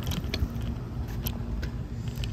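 Scooter wheels rolling over a concrete sidewalk: a continuous low rumble with a faint steady hum, broken by a few sharp clicks and rattles.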